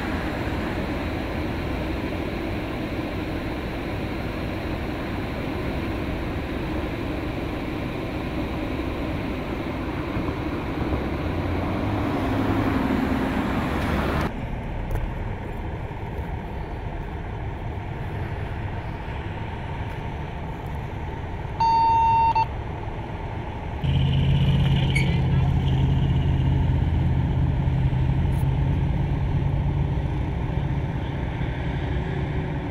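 Steady freeway traffic noise that stops abruptly about halfway through. A quieter stretch follows with one short, high electronic beep, then a steady low hum of an idling engine starts and runs on.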